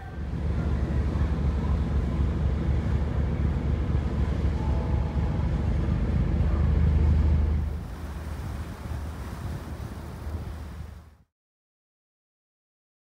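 Loud, steady low rumble of wind on the microphone at a harbour's edge, with a noisy haze of water and boat traffic. It eases somewhat about eight seconds in, then cuts off suddenly near the end.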